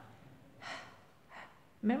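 Two short breathy puffs from a woman's voice, the voiceless "h" sound at the start of "hat", one about half a second in and a softer one near a second and a half.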